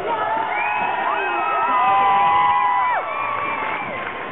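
Several high-pitched young voices shrieking and whooping together in long held cries over crowd noise, some rising in pitch. The cries are loudest about two seconds in and break off a little after three seconds.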